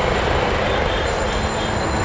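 Steady rumble of street traffic, an even noise with most of its weight in the low end and no distinct events.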